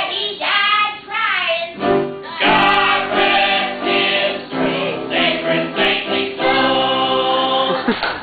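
A woman singing, her first notes wavering in pitch, with fuller sustained accompaniment coming in about two seconds in.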